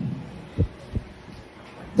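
Two short low thumps on a handheld microphone, less than half a second apart, in a pause between spoken phrases.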